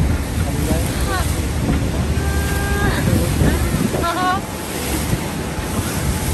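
Steady rush of churning whitewater and wind buffeting the microphone on an open motorboat, under a constant low rumble. A few short voice calls break through about one, two and a half, and four seconds in.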